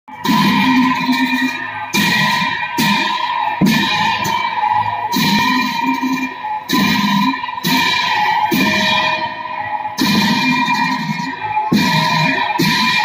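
Ritual music for a Bhutanese masked cham dance: cymbals and drum struck together about once a second, the cymbals ringing on between strikes.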